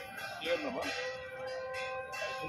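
Repetitive devotional chanting, with a ringing, bell-like tone held through the second half.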